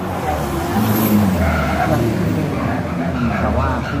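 Race car engines running hard as the cars pass along the street circuit, the engine note rising and falling. A track announcer's voice comes over the loudspeakers near the end.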